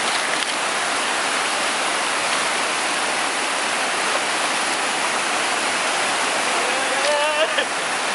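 Steady rush of falling water, like a waterfall or cascade, holding an even level throughout. A short, high-pitched shout or laugh rises over it near the end.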